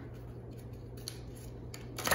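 Tarot cards being handled: a few soft, short clicks and slides of card stock, over a low steady hum.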